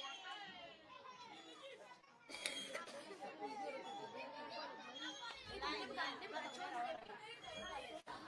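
Faint chatter of many voices talking over one another, with no singing or music yet, a little louder from about two and a half seconds in.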